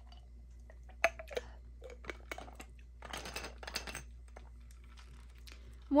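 A person drinking water from a small glass bottle: faint sips and swallows with small clicks as the bottle is handled, and a denser stretch of sound about three seconds in.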